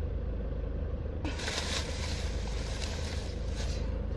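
Steady low hum of a car idling, heard from inside the cabin, with a rustling of a plastic shopping bag from about a second in until just before the end.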